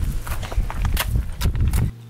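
An irregular run of soft knocks and clicks over a low rumble, with no speech.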